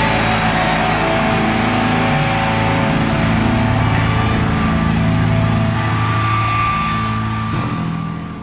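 Rock band music with distorted electric guitar: held, ringing notes with no singing, starting to fade near the end.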